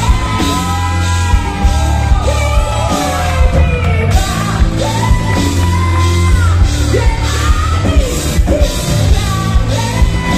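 Live rock band: a male lead singer belting and yelling into a microphone over electric guitar and drums, heard in the echo of a large hall.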